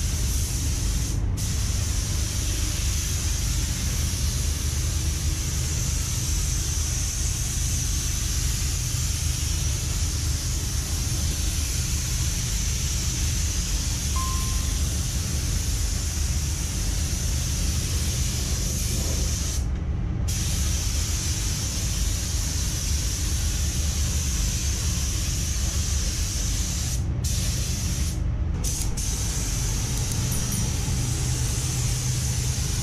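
Compressed-air paint spray gun spraying, a steady loud hiss that breaks off briefly a few times as the trigger is let go, over a steady low rumble.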